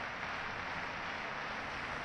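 Steady murmur of a large stadium crowd, an even wash of many distant voices with no single sound standing out.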